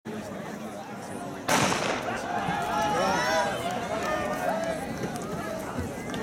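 A track starter's pistol fires once, a sharp crack about a second and a half in, starting the race. Spectators' voices shout and cheer after it.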